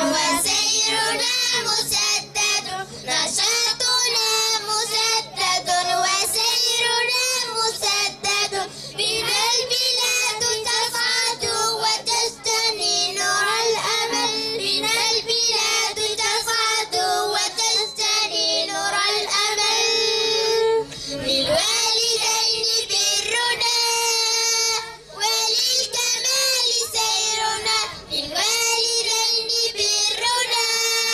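A group of children singing a song together into microphones, amplified through a PA loudspeaker.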